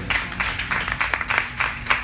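Audience applauding: dense, irregular clapping, with faint music lingering underneath.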